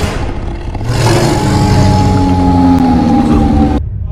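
A loud, deep rumbling swell from a film soundtrack: it builds about a second in, holds with a slightly falling drone, and cuts off abruptly near the end.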